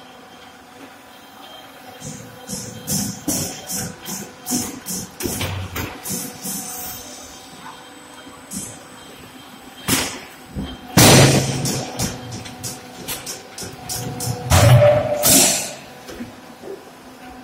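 Fly ash brick plant machinery running: a steady hum under a run of short metallic clanks and knocks. Then come louder crashing bursts about ten, eleven and fifteen seconds in, the one near eleven seconds the loudest.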